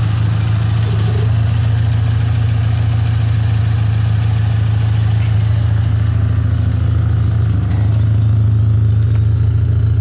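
Volkswagen New Beetle's engine idling with a steady low drone.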